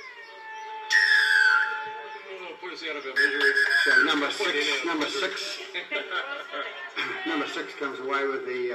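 Full-time signal at a rugby league match: two long, loud whistle blasts, each sliding down in pitch, about a second and about three seconds in. Players' voices and shouts follow.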